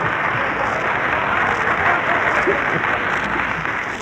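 Studio audience applauding steadily after a comedy gag, heard on an old 1934 radio broadcast recording.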